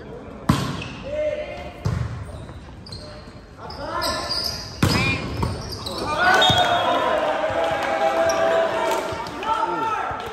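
A volleyball rally: the ball is struck with sharp smacks about half a second, two seconds and five seconds in. Several voices then shout and cheer together for the last few seconds.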